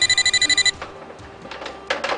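Landline telephone's electronic ringer trilling in rapid pulses and stopping just under a second in, followed near the end by a sharp clatter as the receiver is picked up.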